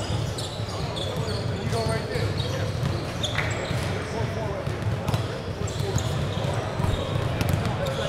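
Basketballs bouncing on a gym court amid the overlapping chatter of many voices.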